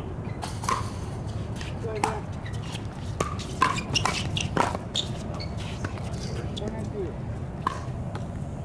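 Pickleball paddles hitting a plastic ball in a doubles rally: a series of short, sharp pops that come quickly one after another in the middle of the point, during the exchange at the net. Voices murmur faintly under them.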